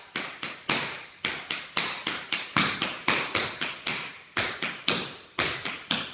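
Tap shoes striking a wooden studio floor in a fast, even run of steps, about four sharp taps a second, each ringing briefly in the room.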